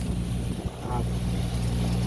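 Pontoon boat's outboard motor running steadily under way, a low even hum.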